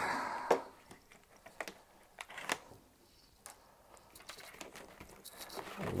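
Cardboard sleeve being handled and slid off a plastic tool case: a short papery scrape at the start, a few light clicks and taps, then rising cardboard rustling and sliding near the end.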